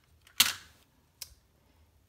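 A hand knocking against the overhead camera rig: one sharp knock about half a second in, then a lighter click, which jolts and shakes the camera.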